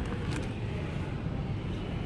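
Steady low background rumble of a shop interior, with a faint click about a third of a second in.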